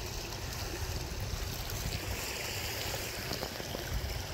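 Water running steadily through a shallow pond stream, trickling over stones and around logs that have been set to make it flow faster.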